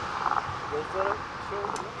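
A man's voice in short broken fragments over a steady hum of road traffic.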